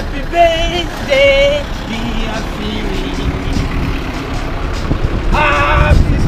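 Busy street ambience: a steady low rumble with a few short, high-pitched voice calls of about half a second each, two near the start and one near the end.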